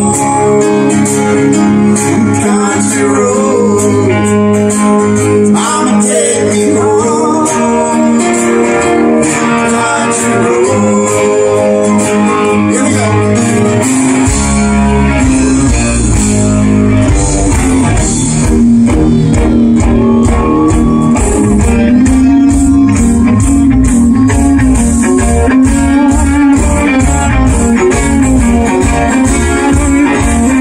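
Live band playing loudly through a stage PA, with electric and acoustic guitars carrying the melody. About halfway through, bass and a steady drum beat come in strongly under the guitars.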